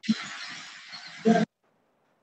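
Hiss from a microphone or audio line that opens abruptly, with a short nasal voice sound about a second in, then cuts off suddenly.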